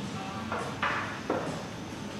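Three short sips of a hot coffee drink from a ceramic mug, the last one lower and duller, over a steady café hum.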